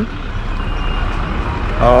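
Street traffic noise: a steady low rumble. A man's voice starts near the end.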